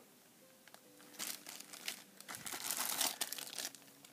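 Clear plastic bags holding loose action figures crinkling as they are handled, in irregular crackling bursts from about a second in until near the end.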